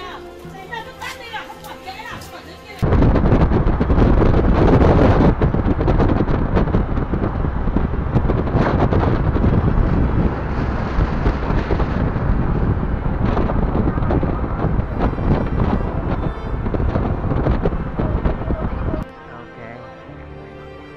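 Loud, continuous wind buffeting on the microphone of a camera travelling fast along a road. It cuts in abruptly about three seconds in and cuts out abruptly near the end. For the first few seconds there is background music with voices instead.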